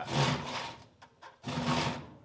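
Handsaw cutting through a wooden board: two long saw strokes, one at the start and one about a second and a half in, with a short pause between.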